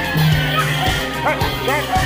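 Traditional Newar drum-and-cymbal music for the Lakhe dance, with even drum strokes under ringing cymbal tones. A few short, high yelps cut through it a little past the middle.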